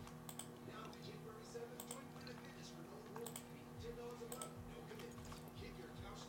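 A few faint, sharp clicks at a computer, some coming in quick pairs, over a low steady hum.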